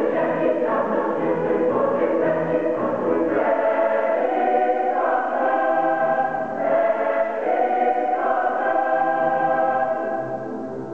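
Mixed youth choir singing sustained chords, with the harmony shifting every couple of seconds.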